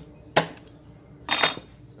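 Meat cleaver striking a thick wooden chopping block twice, about a second apart, chopping through a boiled crab leg. The second knock lasts longer and rings brighter than the first.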